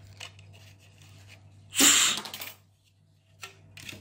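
A single short, hard puff of breath, about half a second long, blown by mouth into a small 3D-printed plastic air engine to test whether its piston will move. A low steady hum and a few faint clicks sit underneath.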